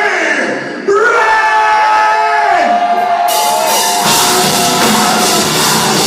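Live metal band starting a song. A held melody line with sliding pitch rings out over the room, cymbals enter about three seconds in, and the full band with drums and distorted guitars crashes in about a second later.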